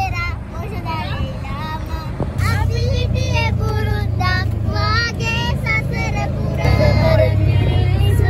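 Tuk-tuk (auto-rickshaw) engine drone heard from inside the cabin while moving, getting louder about two and a half seconds in and again near the end, with young passengers' voices singing over it.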